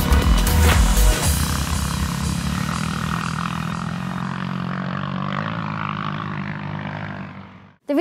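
Background music: a heavy beat for about the first second, then a held chord that slowly fades and cuts off just before the end.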